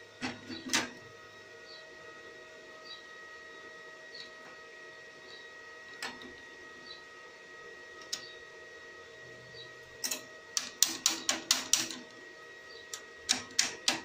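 Sharp metallic clicks and taps from handling a stick-welding electrode holder against steel window-regulator parts on a steel bench: a few single clicks at first, then a quick run of about eight, and a few more near the end. A faint steady high whine runs underneath.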